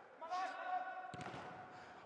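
A football struck on an indoor pitch, one short thud about halfway through, with faint distant voices calling and the echo of a large hall.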